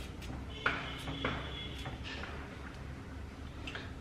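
Faint, scattered clicks and taps of a small kitchen knife against a hard work surface as raw beetroot is cut into small pieces, the two clearest about a second in, over a low steady hum.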